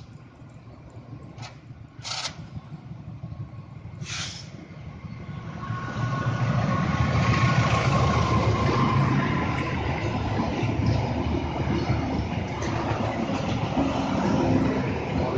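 Diesel-hauled passenger train approaching and passing close by. Its rumble builds and turns loud about six seconds in as the locomotive passes, then runs on as the steady roll of the coaches' wheels on the rails. Two short, sharp noises come a few seconds before it arrives.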